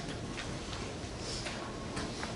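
Chalk tapping and scraping on a blackboard as words are written, heard as a handful of light, irregularly spaced ticks over a steady low background noise.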